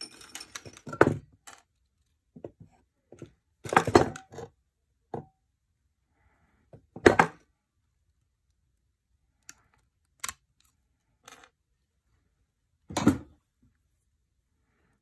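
Metal snips cutting links one at a time off a coil of 16-gauge half-round silver wire: a sharp snip every few seconds, about five in all, with faint clinks of metal between.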